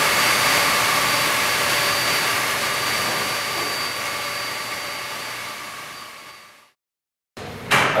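Steady machine hum of swimming-pool circulation pumps in a plant room, with a few high whining tones over the noise, fading gradually and cutting off about a second before the end.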